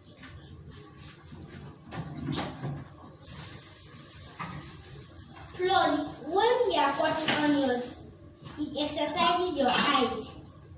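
A kitchen knife taps now and then on a wooden cutting board as onions are chopped. About six seconds in, a person's voice starts and becomes the loudest sound.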